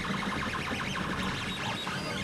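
A 3D printer's stepper motors whining as the print head moves, the pitch rising and falling in short sweeps over a steady running hum.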